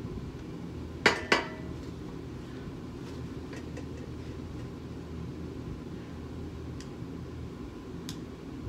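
A lamp set down on a glass tabletop: two sharp clinks about a second in, a quarter second apart, followed by a few faint taps.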